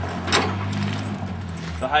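A steady low engine drone with a single sharp clack about a third of a second in; the drone stops shortly before the end, where a man's voice starts.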